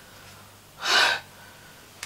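A man huffing out one sharp, breathy exhale about a second in.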